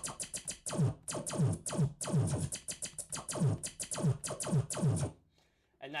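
'Laser Blaster 3' laser sound effect played from the Serato DJ Pro sampler, retriggered in a rapid string of zaps, each falling in pitch. It plays in the hold-to-play setting, sounding only while the pad is held, and cuts off suddenly about five seconds in.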